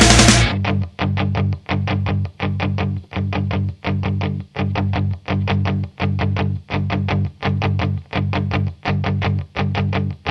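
Rock music with distorted electric guitar and bass. A loud full-band passage cuts off about half a second in, and a chugging riff follows, with a short break about every three-quarters of a second.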